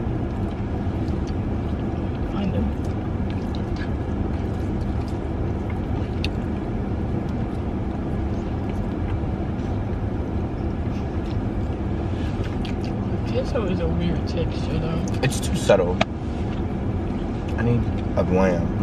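Steady low rumble inside a car's cabin from the idling engine, with scattered light clicks of plastic forks in food bowls and a short vocal sound near the end.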